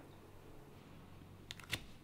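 Quiet room tone, then a few short clicks about one and a half seconds in: playing cards being laid down on a wooden table.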